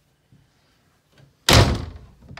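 A wooden cabin door bangs shut once, loudly and suddenly, about one and a half seconds in.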